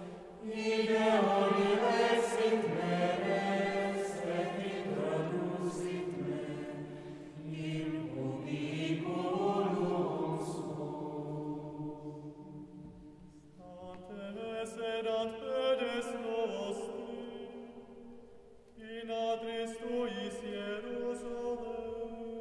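Mixed choir of women's and men's voices singing an unaccompanied late-medieval sacred piece in phrases, with short breaks about thirteen and eighteen seconds in, echoing in a church.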